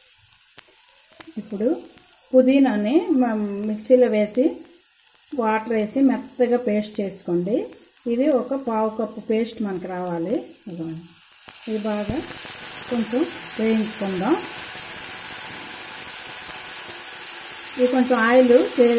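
A hot nonstick kadai of fried onions, green chillies and spices hisses into a steady sizzle once water is poured in from a glass bowl, about two-thirds of the way in.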